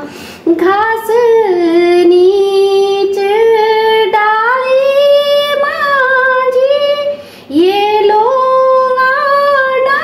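A woman singing a Garhwali khuded geet, a folk song of a married woman's longing for her parents' home, with no accompaniment. She holds long notes that bend slowly between pitches, pausing for breath just after the start and about seven seconds in.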